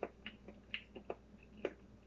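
Close-up eating sounds: about five sharp little clicks and smacks in two seconds as food is picked from a bowl with chopsticks and chewed, the loudest near the end.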